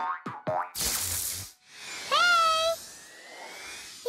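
Animated-cartoon sound effects: a few quick falling zips, then a loud whoosh about a second in, then a short pitched tone that swoops up and holds for about half a second.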